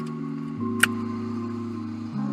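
Soft background music of sustained chords, moving to a new chord about half a second in, with one short click just under a second in.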